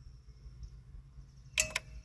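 A low steady background hum, then, about a second and a half in, a short cluster of sharp clicks with a brief tone under them.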